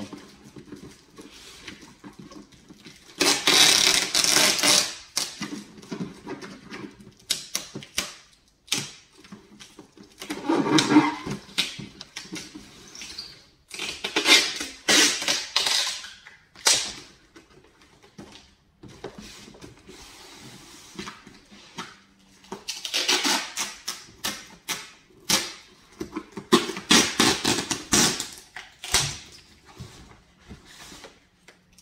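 Cardboard boxes and plastic packaging being handled and packed: irregular rustling, scraping and sharp knocks in bursts of a second or two, with quieter pauses between.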